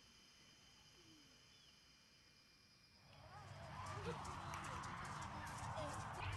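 Faint outdoor ambience with a few short chirping bird calls. About halfway in, a louder background of murmur begins, and a person's voice with a rising and falling pitch comes in.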